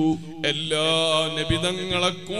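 A man's voice chanting, holding one long steady note from about half a second in, in a melodic intoning style.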